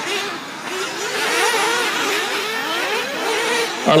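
Several 1/8-scale nitro buggies' small two-stroke glow-fuel engines whining together, their overlapping pitches rising and falling as the cars accelerate and brake around the track.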